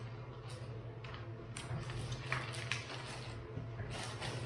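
Clear plastic bag crinkling and rustling in many short crackles as a stack of comic magazines is worked down into it by hand, over a steady low hum.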